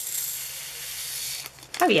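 Diamond painting drills, tiny resin rhinestones, poured from their bag into a small clear plastic storage compartment: a steady rushing hiss of many small beads that stops after about a second and a half.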